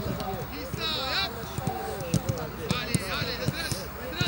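Footballs being kicked and thudding on a grass pitch during a training drill, several dull knocks a second or so apart, under a steady mix of players' voices calling out.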